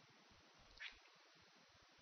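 Near silence: room tone, with one brief, faint high-pitched sound a little under a second in.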